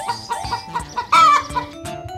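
Chickens clucking, with one loud, short squawk a little past the middle, over cheerful background music.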